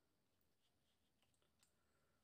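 Near silence, with only a few very faint ticks.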